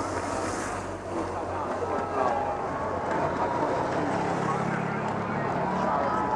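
Motorcycle outriders riding past at road speed over steady chatter from a roadside crowd. A hiss in the first second comes as the nearer bike goes by. Another motorcycle's engine hum grows in the second half.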